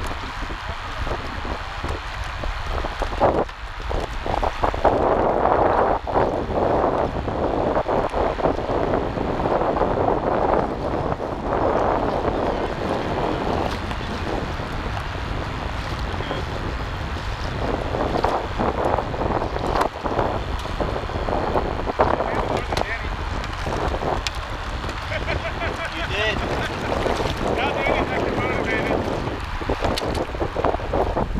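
Wind buffeting the microphone of a kayak-mounted action camera, rising and falling in gusts, over water washing along a kayak hull on open, choppy water.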